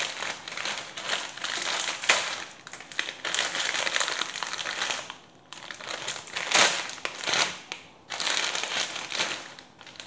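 Plastic film wrapper of an instant-noodle packet crinkling and rustling in irregular bursts as hands grip it and pull it open, with a short lull about five seconds in and one sharp, louder crackle soon after.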